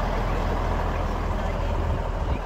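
A heavy truck engine idling with a steady low drone.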